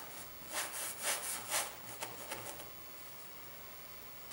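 Flat paintbrush scrubbing across stretched canvas in three short strokes during the first two seconds.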